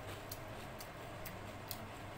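Faint, sharp clicks of crisp fried papad chips being picked up and handled by fingers on the plate, four light ticks about half a second apart.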